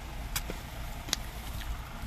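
Mouth clicks and smacks of someone eating soft marang fruit flesh, two sharp ones about a third of a second and a second in, over a steady low rumble.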